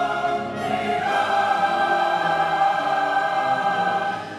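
Large mixed choir singing with a full orchestra: the harmony shifts to a new chord about a second in, which the choir holds as one long, loud sustained note.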